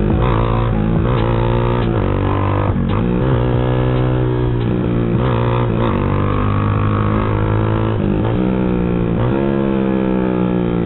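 Motorcycle engine running under way, its pitch rising and falling as the throttle is opened and closed, with several short breaks in the drone.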